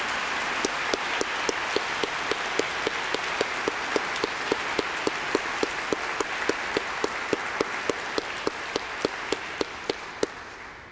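Audience applauding, with one pair of hands close by clapping steadily at about three to four claps a second; the applause slowly dies down toward the end.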